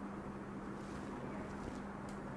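Quiet classroom room tone with a faint steady low hum and no distinct sound.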